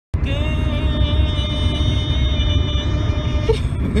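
Steady low road rumble inside a moving car, with one long held note sounding over it that stops about three and a half seconds in, followed by a short laugh at the end.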